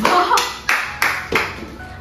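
A run of about five sharp claps, roughly three a second, each ringing briefly, fading toward the end.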